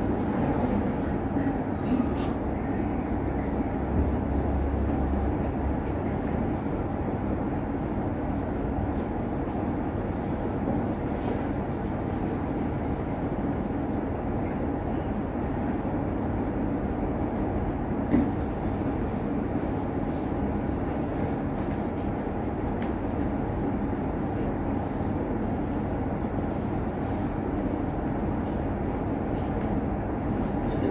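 Steady low rumbling background noise with no clear rhythm, and a single faint knock about eighteen seconds in.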